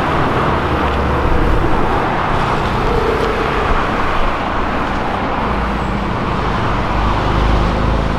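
Sports cars driving slowly past in street traffic, a Mercedes-Benz SLS AMG and then a Porsche 911, engines running with a steady low rumble and road noise.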